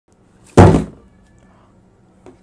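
A cardboard shipping box set down hard on a desk: one loud, dull thud about half a second in that dies away quickly.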